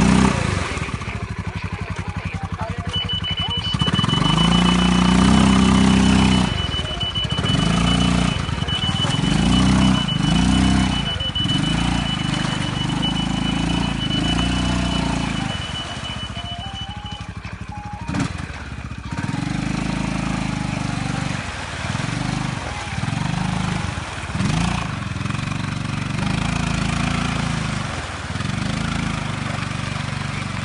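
A 4x4 ATV's engine revving in repeated surges, rising and falling, as it drives through deep muddy water. A steady thin high-pitched tone sounds from a few seconds in until about halfway.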